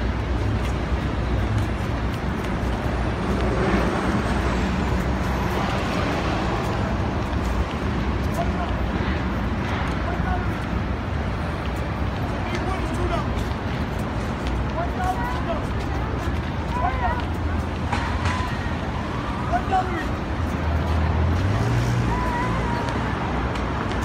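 Busy city street: a steady rumble of road traffic, with passers-by talking.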